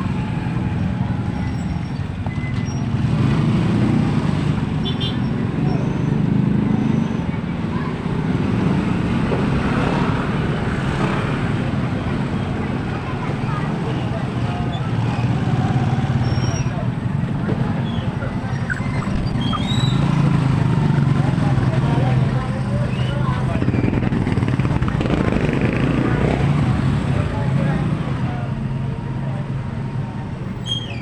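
Street traffic: the engines of motorcycles and motorcycle-sidecar tricycles running steadily and swelling as they pass close by, with people talking among them.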